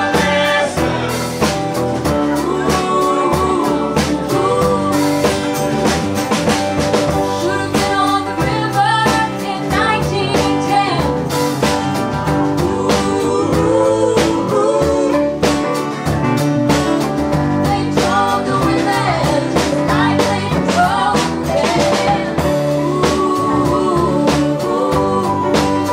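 Live band playing a song: piano and other instruments under a woman singing lead, with drums keeping the beat.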